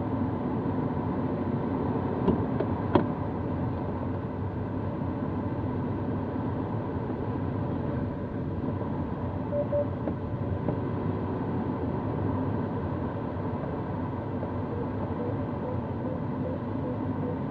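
Steady rush of air past an Antares sailplane's cockpit in gliding flight, with two sharp clicks a couple of seconds in.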